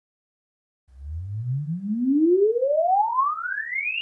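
Sine-sweep test tone played through a small studio monitor for a frequency-response reference measurement. It starts about a second in and rises steadily in pitch from a deep hum to a high whistle.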